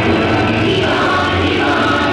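Loud recorded music with a sung vocal, playing steadily.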